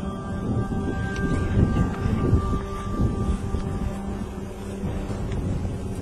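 Wind buffeting the camera's microphone in uneven low gusts. Under it, background music holds long steady tones.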